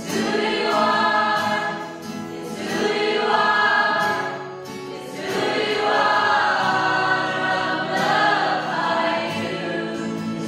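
Mixed youth choir of young men and women singing a worship song together, accompanied by acoustic guitar. The singing comes in phrases, dipping briefly about two seconds in and again around the middle.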